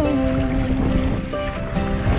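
Background song: a long held note and a few changing notes between sung lines.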